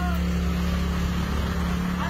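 A motor vehicle engine idling steadily close by, a low, even hum that does not change. A short voice cuts in right at the start.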